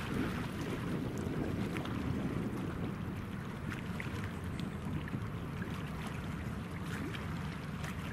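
Steady riverside ambience: a low rumble with wind and water noise, and a few faint ticks scattered through it.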